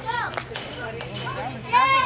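Children's voices chattering and calling out, with a louder high-pitched shout near the end.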